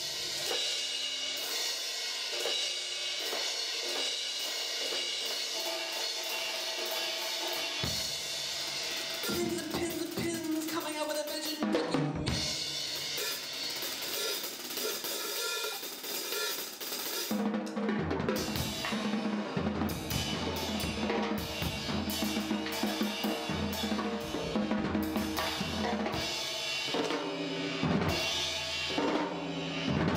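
Drum kit played live, with a steady wash of cymbals. About seventeen seconds in the playing grows heavier, with bass drum and toms struck in a driving rhythm.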